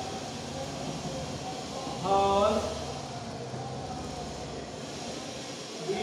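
A man's voice speaking one short drawn-out word about two seconds in, over a steady low background rumble.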